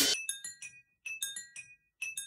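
Water-filled glass tumblers tapped with a thin stick, giving short, clear pitched clinks in a quick uneven rhythm, about eight strikes with a pause around the middle. The tail of a louder crash fades out in the first instant.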